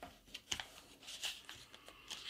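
Thick sheet of paper rustling and crackling faintly as it is folded and creased by hand, in short irregular crinkles.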